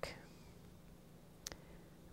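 Very quiet room tone with a faint steady hum, broken by one short click about one and a half seconds in.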